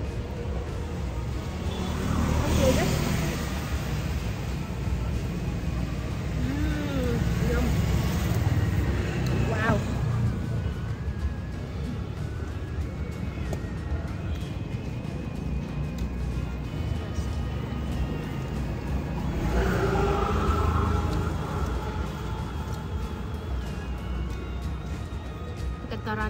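Street ambience: a steady low traffic rumble with voices and music in the background.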